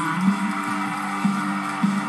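Background music: a steady, low held drone of two sustained tones with no words over it.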